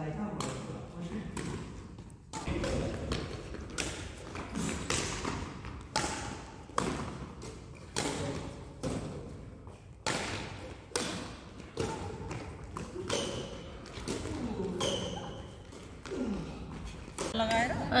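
Badminton rally: racquet strings striking the shuttlecock in a series of sharp smacks, roughly one a second, echoing in the sports hall, with players' voices between the hits.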